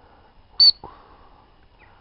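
A single short, loud pip on a high-pitched gundog training whistle, followed at once by a fainter falling note.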